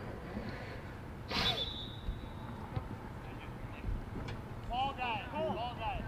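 Players shouting calls to one another on an open soccer field over a steady background of field noise. A short sharp sound with a brief high tone comes about a second and a half in, and a run of loud shouts comes near the end.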